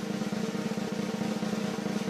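A steady snare drum roll.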